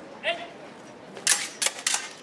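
Sabre blades clashing in a fencing bout: three sharp metallic clicks in quick succession about a second and a half in, over outdoor background noise.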